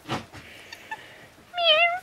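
A pet cat giving one short meow about three-quarters of the way through, begging for food.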